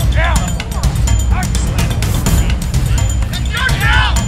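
Wind rumbling on the camera microphone, with short distant shouts from players and spectators at the field.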